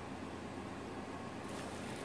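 Steady, low background hiss with a faint low hum, with no distinct sound standing out.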